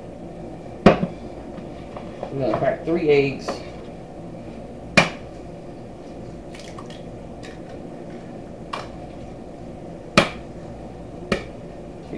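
Eggs cracked one at a time on the rim of a small glass bowl: sharp single taps a few seconds apart. Near the start a louder knock, like the glass bowl being set down on a wooden cutting board.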